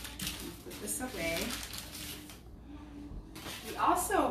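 Crinkling and rustling of paper wrapping as a food item is handled on a cutting board, under quiet, indistinct talk.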